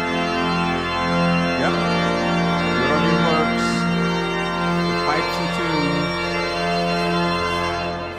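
Church organ playing slow, sustained chords, rich and full, which are released near the end and die away in the church's reverberation.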